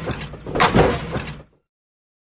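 Repeating whooshing surges, about one a second, each with a falling low tone; the sound cuts off abruptly about one and a half seconds in.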